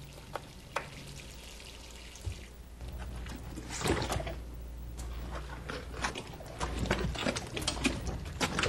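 Water sloshing and trickling in a kitchen sink as hands rub a raw turkey, with scattered splashes and knocks that come thicker in the second half.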